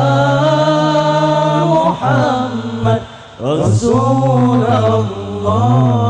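A group of young men chanting Islamic sholawat in unison through microphones, in praise of the Prophet Muhammad, holding long drawn-out notes. The voices break off about three seconds in and come back with a new phrase that rises in pitch.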